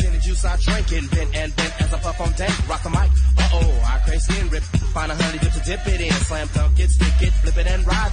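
Chicago house DJ edit mix playing from a cassette tape: a rap-style vocal over a heavy bass line, with a long low bass note returning about every three and a half seconds.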